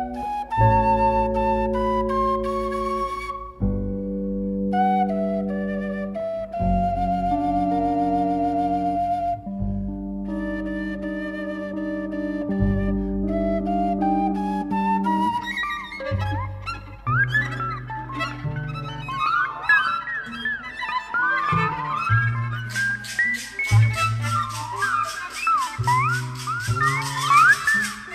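Ensemble music: a flute melody over held chords and bass notes. In the second half, quick gliding melodic lines take over, and a fast, bright rhythmic pattern joins near the end.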